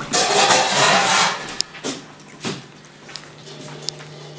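Rustling handling noise from a handheld camera being swung about, loudest in the first second or so. A few light knocks follow over a steady low hum.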